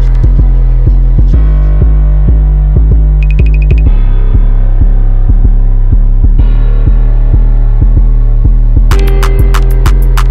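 Trap instrumental in a stripped-down section: a loud, sustained 808 bass line with a steady rhythm beneath it. The hi-hats drop out except for a brief fast roll about three seconds in. The full hi-hat pattern comes back about a second before the end.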